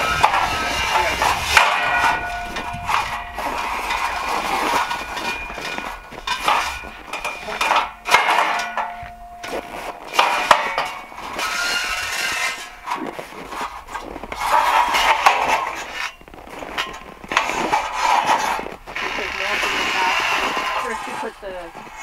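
Steel scaffold frames being handled and fitted together: irregular metal clanks and knocks, a couple of them ringing for about a second, with low, indistinct talk.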